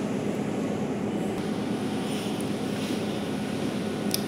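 Steady background noise with no distinct clicks or knocks.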